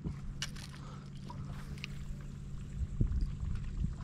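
Steady low hum from the bass boat's motor over a low rumble of wind and water, with a single light click about three seconds in.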